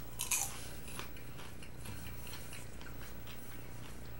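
A person biting into a mouthful of seasoned popcorn and chewing it: a louder crunch just after the start, then faint, irregular crunching chews.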